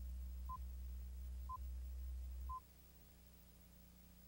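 Countdown beeps on a commercial's tape leader: short high pure-tone pips, one a second, three in all, over a steady low hum that cuts off with the last beep.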